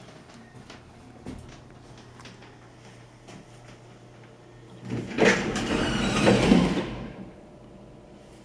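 1970s Armor traction elevator: a low steady hum while the car runs, then about five seconds in the sliding doors open with a loud, rattling run of about two seconds.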